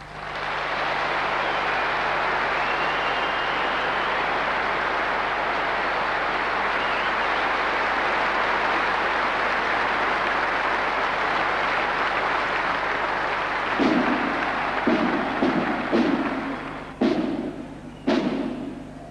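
Large arena audience applauding steadily. About fourteen seconds in, loud drum beats start over the applause, a few strokes a second apart, as a marching drum band begins.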